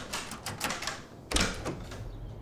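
A run of sharp clicks and taps, with one louder knock about a second and a half in.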